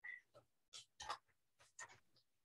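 Faint, scattered rustles and light taps of paper being handled: a pad of palette paper being fetched.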